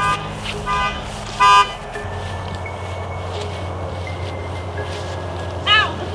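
Pickup truck horn giving two short toots about a second apart, the second louder, followed by a steady low hum.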